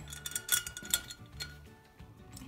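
Faint metallic clicks and clinks as the serrated jaw of a basin wrench is fitted around a brass faucet nut, several light ticks in the first second and a half, with quiet background music.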